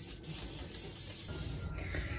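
Aerosol hairspray sprayed onto freshly curled hair in one steady hiss, with a brief break just after the start, cutting off near the end.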